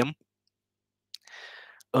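A faint click, then a short intake of breath on a video-call microphone, in a pause between spoken sentences.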